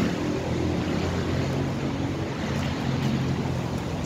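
Street traffic: a double-decker bus's diesel engine running steadily with a low drone, under a hiss of road noise.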